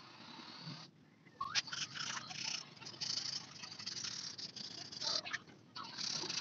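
Hand rubbing and scraping at a bicycle wheel hub with cloth and abrasive strip, in uneven scratchy strokes that start about a second and a half in, with a short pause near the end.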